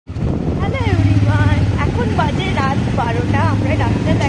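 A vehicle engine running with a steady low hum, and a high-pitched voice talking over it in short lively phrases.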